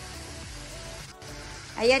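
Chicken sautéing in a pan, a steady sizzle that drops out for an instant just past the middle.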